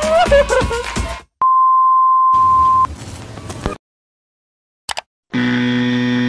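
Outro jingle music ending about a second in, then a steady high beep tone held for about a second and a half. Near the end comes a short electronic buzz, a video-glitch transition sound effect.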